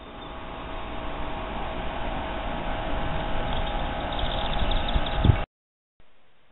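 A steady hum over a low rumble, growing gradually louder, then cut off suddenly about five and a half seconds in.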